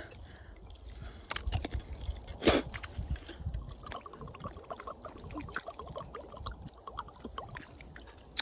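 A person drinking water from a bottle made of ice: faint sloshing and gulping, with a quick run of small clicks around the middle. A low rumble runs underneath.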